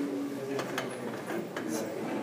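A few light clicks of a laboratory beam balance as its sliding weight is moved along the notched beam, with a quiet voice.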